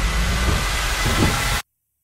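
Loud, steady rushing noise over a deep rumble. It cuts off abruptly about one and a half seconds in, dropping to dead silence.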